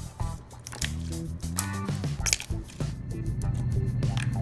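Slime squished and poked by fingers, with several sharp, wet pops, over background music.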